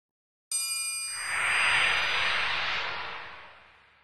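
Title-card sound effect: a bright, bell-like chime struck about half a second in, followed by a rushing swell that builds and then fades away over the next three seconds.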